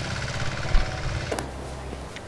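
Walking tractor's small engine running steadily in the distance, a low even putter. A sharp click comes about two-thirds through, and the engine sounds quieter after it.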